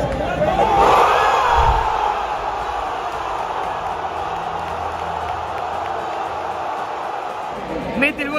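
Stadium crowd of football fans erupting in a loud cheer that peaks about a second in, then carries on as a steady roar of voices: the reaction to a goal.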